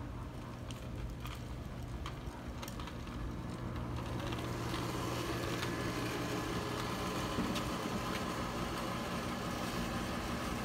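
Measuring wheel rolled along a concrete pool deck, its counter ticking regularly, over a steady mechanical hum that grows louder from about four seconds in.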